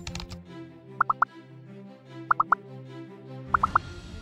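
Quiz sound effect of three quick pitched pops, repeated three times about 1.3 s apart, each group marking an answer choice popping onto the screen, over soft background music.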